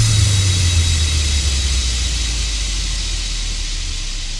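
Electronic dance track's closing white-noise wash over a deep bass drone, starting suddenly and fading slowly.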